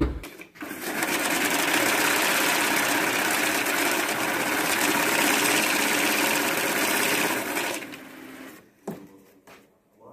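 Banknote counting machine running through a stack of notes: a steady, rapid mechanical whirr for about seven seconds that then dies away, with a short click a little later.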